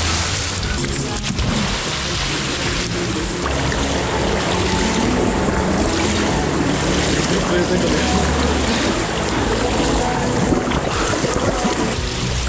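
Pool water splashing and churning close to the microphone as swimmers thrash about, with a music track underneath.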